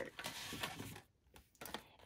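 Faint rustling of paper and card handled on a craft table as a carded package of metal dies is picked up, over about the first second, then a brief near-quiet before a few faint small handling sounds.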